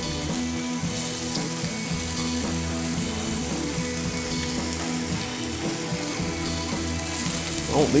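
Background music over hamburger patties sizzling steadily on a hot flat-top griddle, just after being flipped to sear.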